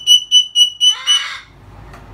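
Moluccan cockatoo giving a rapid run of loud, high, even beeps, about four a second, in imitation of a smoke alarm. The beeping ends about a second in with a short harsh burst.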